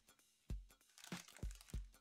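Plastic wrap crinkling in a few short crackles, with soft knocks as the wrapped model piece is set down on a wooden bench.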